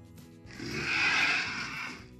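Background music, with a loud rushing, hiss-like sound effect starting about half a second in and lasting about a second and a half.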